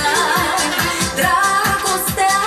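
A woman singing a Romanian-language pop song into a microphone over a backing track with a steady, fast dance beat.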